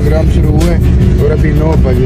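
Voices and music inside a car cabin over a steady low engine and road rumble.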